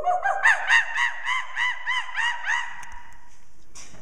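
A woman imitating a monkey call with her voice: a run of about a dozen hooting whoops that climb in pitch at first, then repeat about four a second before stopping about three seconds in.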